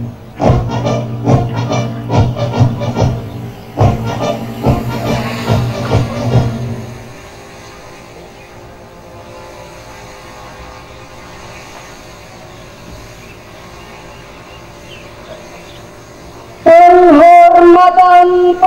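Ceremonial marching music with a steady beat of about three strokes a second for the first seven seconds, then it stops and only a quiet steady background remains. Near the end a loud, long, drawn-out shouted parade command begins.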